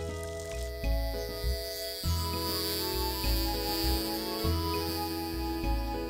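Light instrumental cartoon background music: a bass note recurring about every second under sustained melody notes, with a bright high shimmer coming in about two seconds in.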